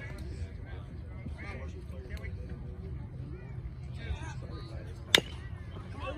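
Faint crowd chatter over a low steady background, then one sharp crack about five seconds in: a pitched baseball's impact at home plate, the loudest sound here.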